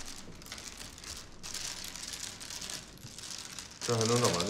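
Mahjong tiles being shuffled by hand on a tabletop: a continuous clatter of many small tile clicks. A man's voice begins at the very end.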